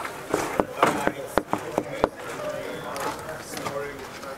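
Knuckles knocking on a glass dressing-room door: about six sharp knocks in the first two seconds, then a pause.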